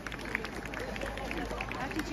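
Quiet, scattered chatter from a group of people standing outdoors, with a steady low background hum from the street.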